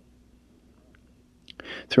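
A pause in a man's read-aloud narration: near silence with a faint steady hum, then a breath in and the voice starting again near the end.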